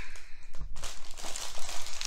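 Clear plastic wrapping crinkling as a sealed LEGO instruction booklet and sticker sheet are handled.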